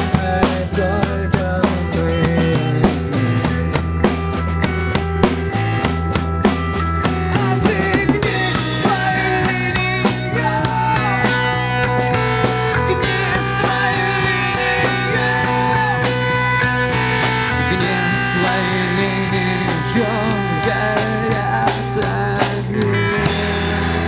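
Street rock band playing live through amplifiers: drum kit with electric guitars and bass. Busy drumming fills the first several seconds. About eight seconds in, the drumming eases and sustained guitar notes come forward.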